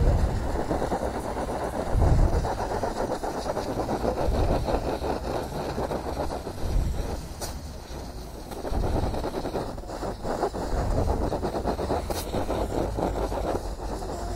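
Compressed air from a blow gun rushing through a pleated scooter air filter element, blowing the dust out from the back. It is a continuous rushing that swells and dips as the nozzle is moved over the filter.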